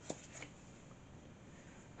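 Faint handling of a tarot card being drawn from the deck, with two soft clicks in the first half second over quiet room tone.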